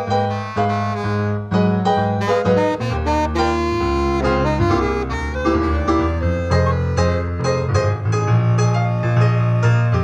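Saxophone playing a quick old-time jazz melody over an electronic keyboard's piano accompaniment with a moving bass line.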